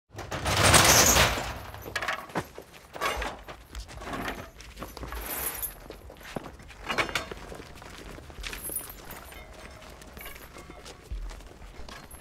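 Sound effects under the opening logos: a loud burst of noise about a second in, then scattered knocks and short bursts of noise over a low background.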